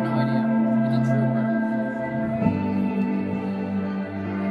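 Electric guitar playing slow, sustained chords that ring on, moving to a new chord about two and a half seconds in.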